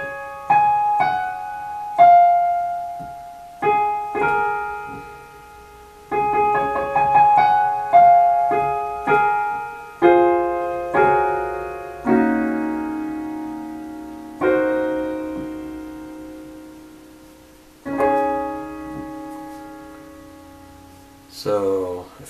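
Digital keyboard with a grand piano voice playing a slow melody with chords, each note or chord struck and left to ring and fade. The playing comes in short phrases with brief gaps, and two long chords are held and left to die away in the second half.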